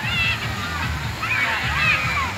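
Wave-pool water sloshing and splashing as waves break, mixed with children's high-pitched shouts and chatter.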